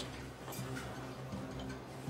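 Faint ticking over a low, steady hum, in a quiet gap in the dialogue.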